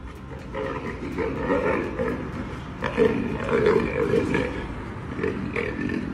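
A lion growling in a run of rough, uneven bursts.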